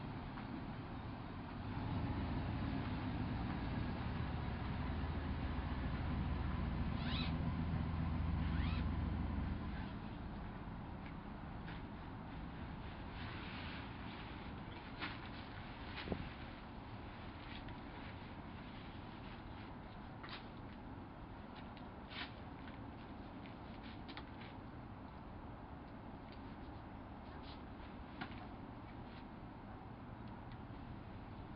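Scattered light clicks and taps from webbing straps and carabiners being handled as a hammock suspension is hung. For the first ten seconds a low droning rumble sits under them, and two short chirps come about seven and nine seconds in.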